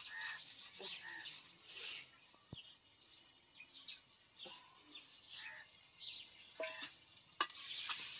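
A metal spoon stirring and scraping in a steel pot of dal cooking on the fire: faint, irregular scrapes and clinks.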